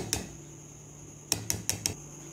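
Wire whisk clicking against a stainless steel bowl while batter is whisked: a couple of sharp clicks at the start, then a quick run of about five metallic taps near the end.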